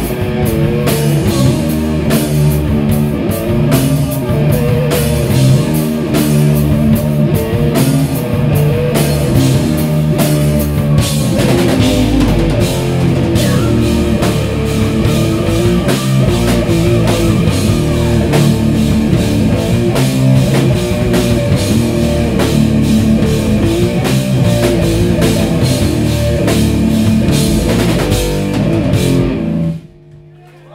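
A doom/sludge metal band playing live: distorted bass and guitar chords over a drum kit, with vocals over part of it. The song stops abruptly on its last hit near the end.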